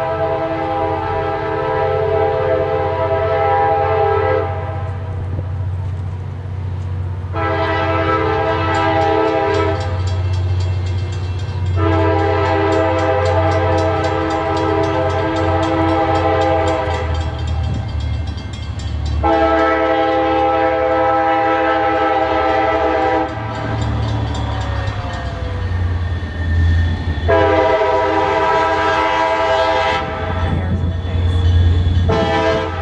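Diesel locomotive's multi-chime air horn sounding a series of long blasts, five in all with pauses between, the last still going at the end. Under the horn runs the low, steady rumble of the approaching train.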